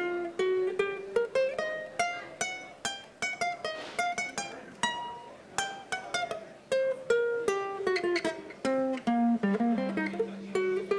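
Ukulele played one note at a time, improvising on a pentatonic scale shape: a few picked notes a second, stepping up and down in pitch, each ringing briefly.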